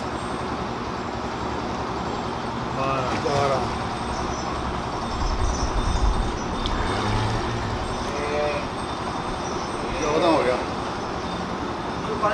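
Steady outdoor background noise, a low rumble with a hiss, with brief faint voices in the background a few times.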